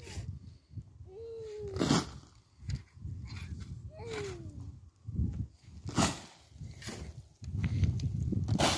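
An animal giving two short calls, each falling in pitch, about three seconds apart, over a low rumble with a few sharp scuffs or knocks.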